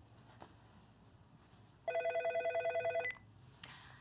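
Telephone ringing: one fast-warbling two-tone electronic ring about a second long, starting about two seconds in, signalling an incoming call.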